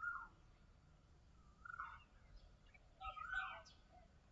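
Faint bird calls: three short calls about a second and a half apart, each holding a note and then dropping in pitch.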